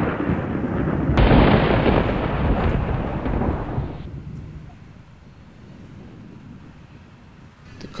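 Thunderclap from a lightning strike: a sharp crack about a second in over a rumble already under way, then the rumble dies away over the next few seconds.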